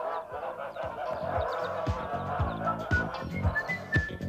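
Geese honking and cackling together, giving way after about two seconds to the closing theme music: a run of bass notes with a whistled tune coming in near the end.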